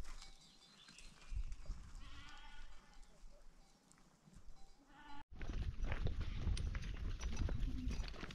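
A goat bleats about two seconds in, with a second short bleat just before five seconds. After a sudden break, footsteps crunch and clatter over loose stones, with a low rumble beneath.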